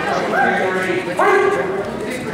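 Two loud human shouts, the first at the start and the second about a second in, over the murmur of a crowded gym.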